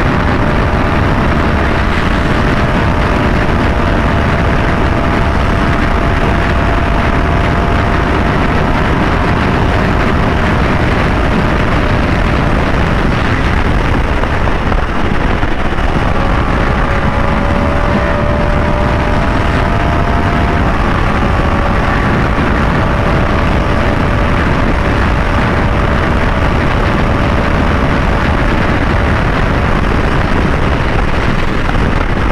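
2023 Yamaha R1's crossplane inline-four running steadily at highway cruising speed under a heavy rush of wind noise on the mic. The engine note breaks briefly about halfway through and picks up again at a slightly different pitch.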